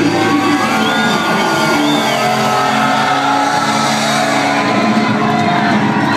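Live rock band playing at full volume, electric guitars and keyboards holding long sustained notes.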